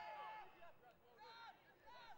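Faint voices, mostly in the first half-second, then near silence broken by brief faint snatches.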